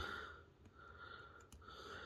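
Very quiet: soft breathing close to the microphone, in faint recurring breaths, with one faint click about halfway through.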